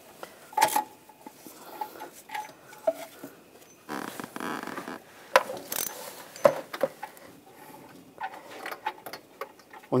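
Irregular metal clicks and clinks of an O2 sensor socket and ratchet on a loosened upstream oxygen sensor, with gloved hands rubbing as the sensor is turned out of its threads.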